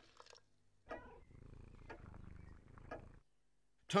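Domestic cat purring for about two seconds, starting about a second in: a low, steady, finely pulsing purr.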